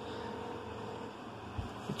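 Steady faint hiss and hum of room noise, with a faint steady tone for about the first second and a soft low thump about one and a half seconds in.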